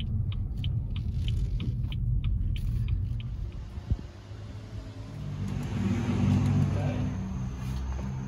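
Low rumble inside a moving car's cabin, with a few faint clicks. About four seconds in there is a single sharp click, after which a similar steady low rumble continues and swells slightly near the end.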